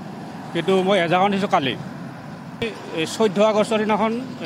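A man talking in two phrases, with a steady background noise filling the pause between them.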